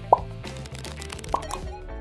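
Cartoon pop sound effects over light background music: a short, rising bloop just after the start and another a little over a second in.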